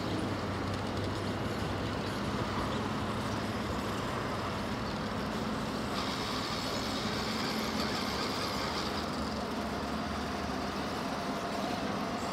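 Electric motor and geared drivetrain of an Axial SCX6 1/6-scale RC rock crawler, whirring steadily as it creeps up over rocks. A higher whine joins for a few seconds about halfway through.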